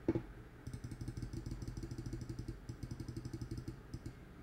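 Rapid, even clicking of a computer mouse button, about ten clicks a second with a short break partway through, as the font-size minus button is pressed over and over to shrink the text.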